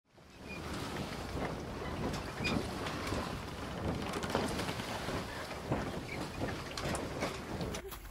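Rushing wind-and-water noise that fades in over the first half second and runs on evenly, broken by many small irregular crackles and splashes.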